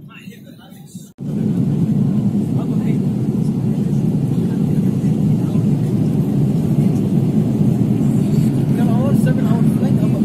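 Airliner engines and airflow heard from inside the passenger cabin: a loud, steady, deep roar that cuts in abruptly about a second in after a quieter moment. This is typical of jet engines at takeoff thrust during the takeoff roll.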